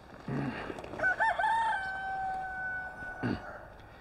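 A rooster crowing once in the distance: one long call that wavers at the start and then holds a steady pitch for about two seconds. A short knock comes near the end.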